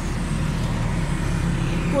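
Suzuki Alto 1000cc's carburetted petrol engine idling steadily at the exhaust, running evenly with no misfire after its carburettor jets were replaced and its tuning set.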